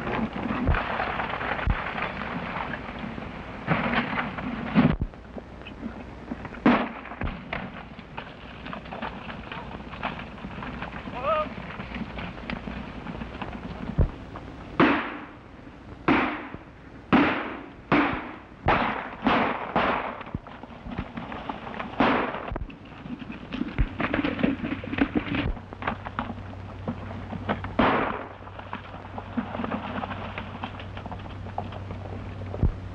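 Gunfire during a stagecoach chase in an early sound film: a few scattered shots early, then a rapid volley of about ten shots, each with an echoing tail, over the noise of galloping horses.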